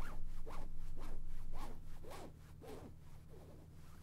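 Jacket zipper being pulled open in short strokes, about two a second, growing fainter after about two seconds.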